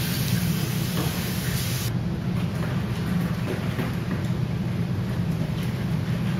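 Kitchen tap running steadily, water splashing over strawberries in a colander in the sink as they are rinsed.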